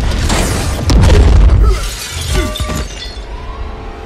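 Film sound effects of a violent crash with glass shattering, loudest about a second in and then dying away, over a dramatic music score.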